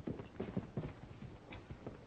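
Horse's hooves clopping on the ground: a few uneven steps, the loudest in the first second.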